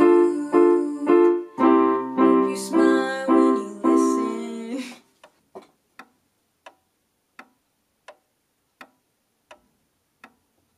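Casio electronic keyboard played in a piano voice, a few chords repeated in steady strokes, stopping about five seconds in. Then a clock ticking, a little under two ticks a second.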